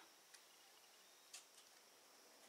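Near silence: room tone, with two faint ticks about a second apart.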